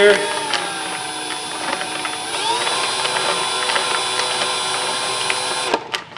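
Cordless drill turning a clear plastic jar of paper raffle tickets slowly, its motor whine dipping in pitch, rising again about two seconds in and holding steady, with the tickets tumbling inside. The drill stops just before the end.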